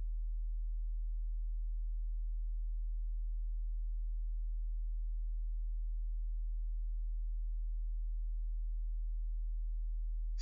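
A steady low-pitched hum, one unchanging tone with nothing else over it.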